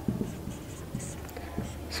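Marker pen writing on a whiteboard: a run of short, separate strokes with faint squeaks as a word is written and underlined.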